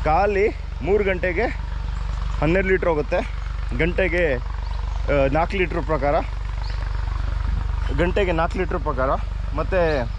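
A man talking in short phrases, with a steady low hum running underneath.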